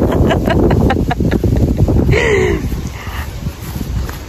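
A woman laughing in short bursts, ending in one falling vocal sound about two seconds in, over wind rumbling on the microphone.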